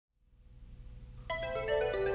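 A TV show's opening theme music: a faint low hum, then about halfway through a run of bright, ringing pitched notes comes in and grows louder.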